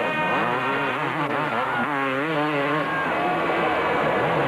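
250cc two-stroke motocross motorcycles racing through a corner, their engine pitch rising and falling as the throttle is worked.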